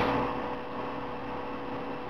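A steady electrical hum with a faint hiss behind it; no distinct handling sounds stand out.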